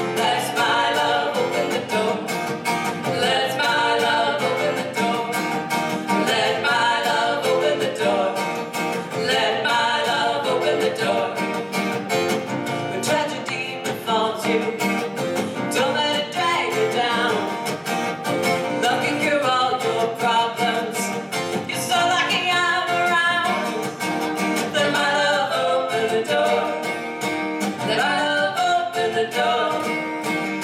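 Live acoustic song: a steel-string acoustic guitar strummed under women's singing voices.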